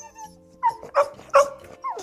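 A puppy whimpering: three short, high whines about half a second apart.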